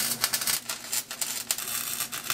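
A 110-volt flux-core wire welder's arc, crackling and sputtering unevenly as it tack-welds sheet metal into a rusty truck cab's floor and kick panel.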